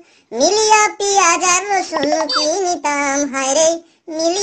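A child singing unaccompanied in long held notes, after a brief pause at the start.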